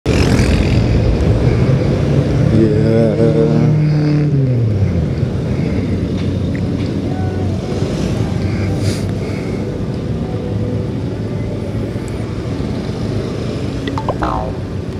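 Motorcycle riding in traffic, heard from the rider's helmet camera: steady engine and road noise, with a pitched engine tone that holds for about two seconds and then falls away about four seconds in.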